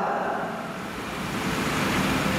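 Whoosh transition sound effect: a rushing noise that dips slightly, then swells and brightens toward the end.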